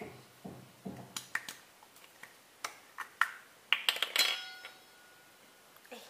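Small sharp clicks and taps from a small bottle of sesame oil being handled and its cap opened, with a short ringing clink about four seconds in.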